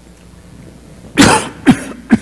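A person coughing twice in quick succession, two short loud coughs about a second in and half a second apart, in a reverberant church.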